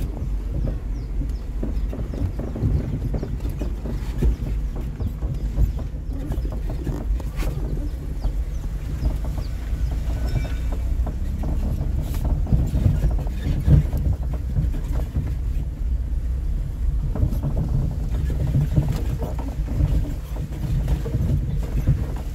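Car cabin noise while driving: a steady low rumble of engine and tyres on the road, with a few short knocks from bumps.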